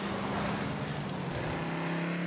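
Off-road racing vehicle engines running in a steady, even drone, from race footage in a music video.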